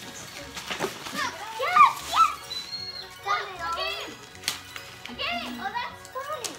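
Children's voices, high and excited, calling out over one another, with music playing underneath and a couple of sharp clicks from handling the gift boxes.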